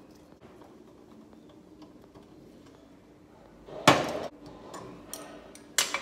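Metal parts of a brake-drum clutch being handled: little more than faint handling noise at first, then one loud metallic clank about four seconds in and a few lighter clicks near the end.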